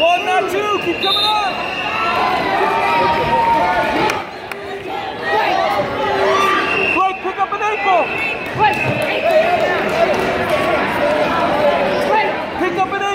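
Crowd of spectators shouting and calling out over one another, a continuous din of many voices in which no single speaker stands out.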